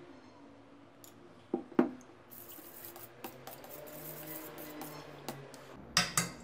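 A metal spoon stirring water in a stainless steel pot, knocking and scraping against the pot: two sharper knocks about two seconds in, then a run of light clinks and sloshing. Faint background music runs underneath.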